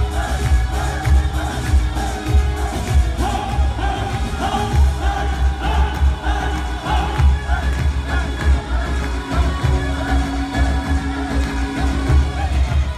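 A live band plays Middle Eastern dance music loudly over a PA, with a strong, steady beat in the bass under a sung and played melody.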